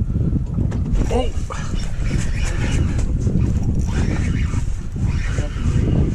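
Steady wind rumble on the microphone aboard a small boat on choppy water, with indistinct voices of people talking now and then.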